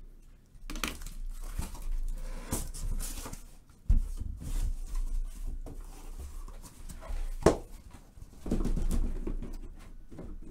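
Cardboard shipping case being opened by hand: flaps pulled back and the boxes inside handled, giving irregular rustling and scraping with two sharp knocks, about four seconds in and near the end.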